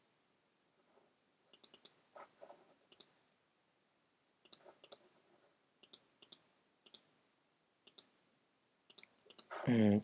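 Computer mouse clicks, short and faint, scattered every second or so, often in quick pairs or threes; a man's voice starts near the end.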